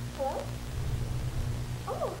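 Two short, high whimpering cries that rise and fall, one just after the start and one near the end, over a low steady hum.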